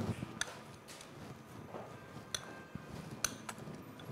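Metal spoon clinking lightly against a small glass bowl while scooping out chopped walnuts dusted with flour, a handful of faint, sharp clicks spread over a few seconds.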